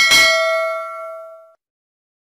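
A notification-bell ding sound effect, struck once and ringing with several clear, bell-like tones that fade and cut off about a second and a half in.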